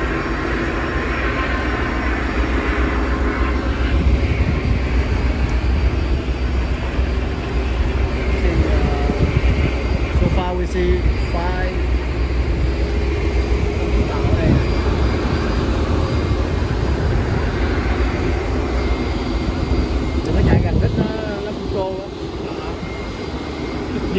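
Twin Suzuki outboard motors running steadily under way at trolling speed, with the rush of the wake behind the boat. The level eases a little about two seconds before the end.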